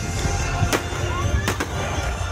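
Fireworks shells bursting overhead: two sharp bangs, one under a second in and one about a second and a half in, over a steady low rumble.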